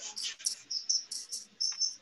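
High-pitched chirping: a quick run of short chirps, about four a second, tailing off near the end.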